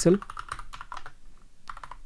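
Typing on a computer keyboard: a run of quick, light key clicks, thinning out briefly past the middle.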